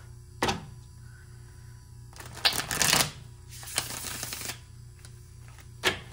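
A deck of tarot cards being shuffled by hand: a sharp tap about half a second in, two bursts of fast card rattling around the middle, and another tap of the deck just before the end.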